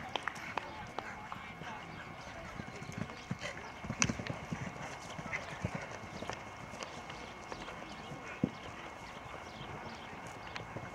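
Hoofbeats of a cantering Thoroughbred/Welsh cob cross mare on grass turf, coming as irregular dull thuds. A sharper knock stands out about four seconds in.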